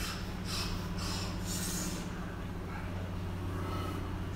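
Steady low hum, with a soft hiss in the first two seconds.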